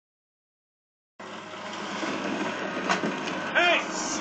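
TV programme sound recorded off the set by a phone: silent for about the first second, then a steady noisy background with a single click, and a short vocal exclamation near the end.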